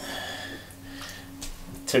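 Electric potter's wheel running with a steady low hum while wet hands press down on a lump of clay spinning on the wheel head, giving a soft wet rubbing that is strongest in the first half second.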